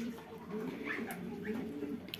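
Poultry calling softly: several short, faint calls that rise and fall in pitch.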